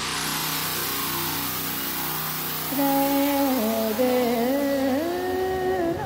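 Intro of an electronic dance track: a rising noise sweep settles into a dense wash over sustained low tones. About three seconds in, a pitched line enters that steps and glides in pitch.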